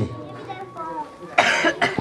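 A man coughs into a nearby microphone: one short rough cough about a second and a half in, with a brief second catch just after.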